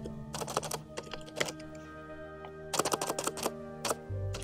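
Computer keyboard typing in three short bursts of key clicks, including backspacing to correct a misspelled word, over steady background music.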